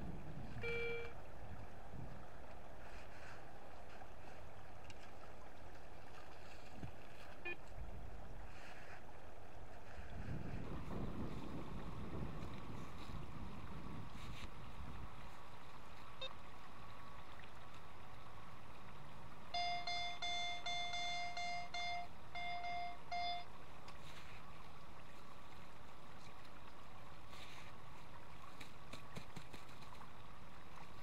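Soil and leaf litter being dug and scraped with a plastic sand scoop over a steady hiss of wind on the microphone. A metal detector gives a short beep about a second in and, later, a steady multi-pitched target tone lasting about four seconds, broken twice, signalling metal in the hole.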